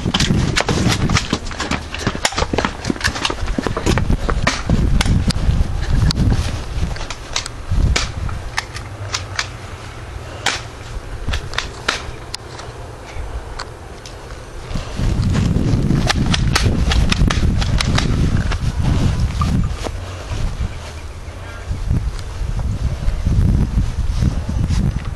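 Irregular string of sharp gunshot-like cracks from toy guns firing, many in quick succession. Under them is a heavy wind rumble on the microphone that eases off for a few seconds in the middle.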